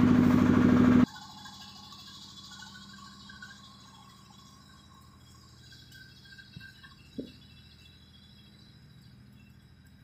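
A vehicle engine humming steadily for about the first second, cut off abruptly. Then only faint outdoor background, with a short knock about seven seconds in.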